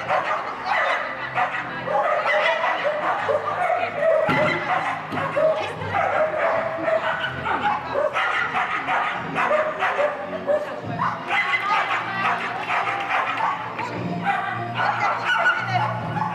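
A dog barking, over a busy background of voices and music.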